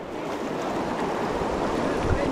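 Fast river current rushing around a stand-up paddleboard running a rapid: a steady rush of whitewater that grows a little louder.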